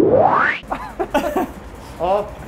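A steep rising pitch sweep, an edited whoosh-like sound effect, that climbs from a low rumble to a high tone and cuts off about half a second in, followed by a man laughing.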